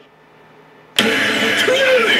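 Pachislot machine sound: the music stops dead, about a second of quiet follows, then a sudden loud burst of effect sound with sweeping, gliding tones comes in as a flaming cut-in effect starts on the machine.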